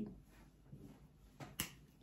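Two sharp clicks a fraction of a second apart, about a second and a half in, the second louder: a clip-on wireless microphone transmitter being handled and clipped onto clothing.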